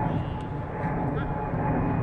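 Distant voices of players calling on a football pitch, over a steady low rumble.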